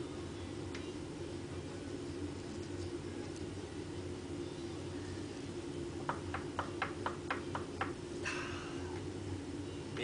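A hand wrench works the nuts on a lathe's change-gear bracket: a quick run of about eight light metallic clicks, then a brief scrape, over a steady low hum.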